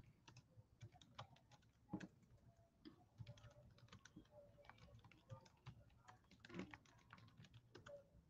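Faint typing on a computer keyboard: irregular key clicks.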